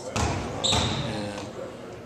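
A basketball bouncing on a gym floor, two sharp thuds in the first second, the second with a brief high squeak.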